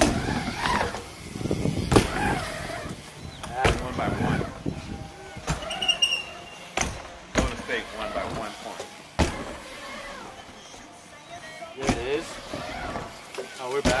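BMX bike riding a wooden mini ramp: tyres rolling on the wooden surface, with a series of sharp knocks from landings and the bike striking the ramp, roughly every one to two seconds.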